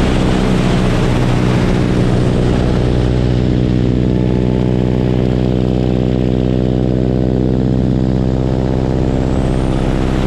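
Boeing Stearman biplane's radial engine and propeller running steadily at power, with wind rushing past the wing-mounted microphone. The engine note holds one steady pitch while the wind hiss eases off in the middle and builds again near the end as the aircraft rolls through inverted flight.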